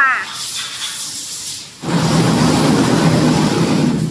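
BOPP tape slitting machine: a hiss for the first second or two, then suddenly, about two seconds in, a louder steady machine running noise with a low hum.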